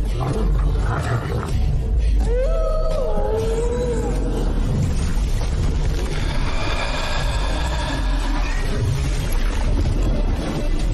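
A wavering animal-like cry gliding up and down in pitch, about two seconds long, starting about two seconds in, over a continuous deep rumble; faint sustained high tones follow in the second half.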